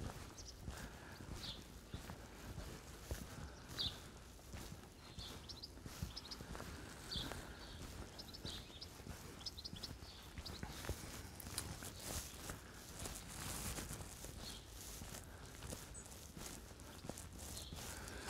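Faint footsteps of a person walking on a tarmac lane, a soft step roughly every second.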